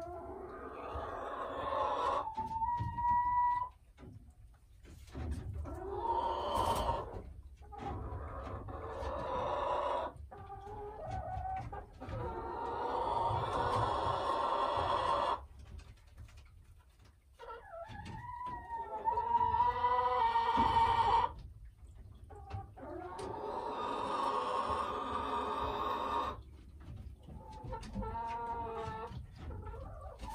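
Boris Brown hen calling: a run of long, drawn-out calls lasting one to three seconds each, with short pauses between them.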